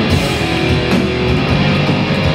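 Hardcore band playing live and loud: distorted electric guitars, bass and drums with crashing cymbals.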